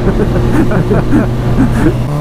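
Motorcycle engine running at a steady pitch while riding, under wind and road noise, with a man's voice talking over it.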